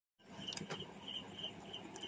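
Faint cricket chirping in short, evenly repeated pulses, with a couple of faint clicks about half a second in.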